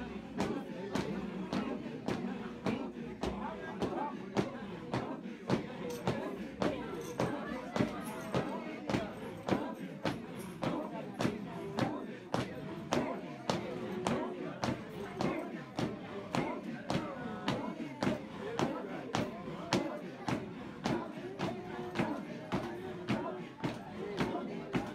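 A congregation singing, with a steady sharp percussive beat of about two strikes a second running under the voices.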